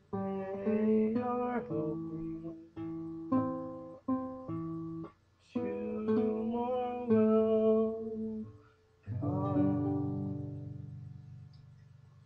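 Classical guitar playing a slow run of plucked chords, with short breaks between phrases, closing the song. The final chord comes about nine seconds in and is left to ring and fade out.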